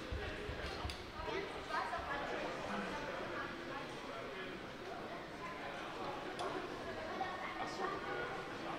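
Indistinct background chatter of many people in a large, echoing hall, with a few faint clicks.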